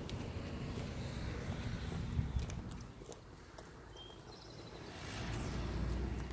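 Footsteps on pavement with a low rumble of handling and wind noise on a handheld microphone, several scattered clicks, and the rumble dropping away in the middle before it returns near the end.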